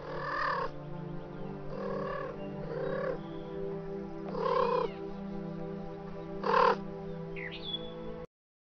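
A cat meowing five times, the last call the loudest, over steady background music. A short chirp comes near the end.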